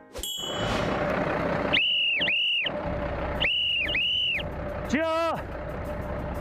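A whistle blown in two pairs of short blasts over a truck engine running steadily, then a short shouted call near the end.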